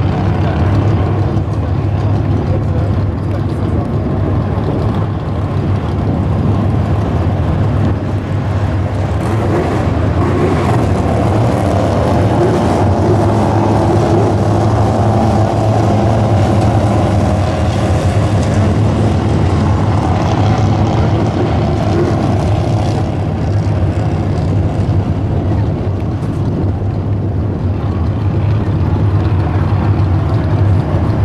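Small slingshot race-car engines running around a dirt oval over a steady low drone, getting louder as the cars pass through the middle of the stretch.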